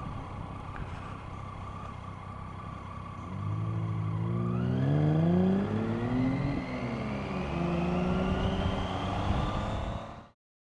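Triumph Tiger motorcycle's three-cylinder engine running steadily at low revs, then pulling away from about three seconds in. Its pitch climbs, drops briefly at a gear change and rises again, with a thin whine rising alongside it.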